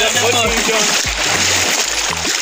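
Small waves washing on a sandy shore, a steady wash of noise, with faint talking over it in the first half.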